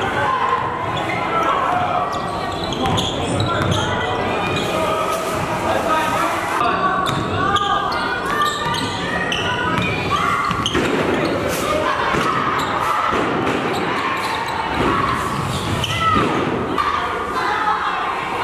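A basketball being dribbled on a hardwood gym floor, the bounces echoing in a large hall, with indistinct voices throughout.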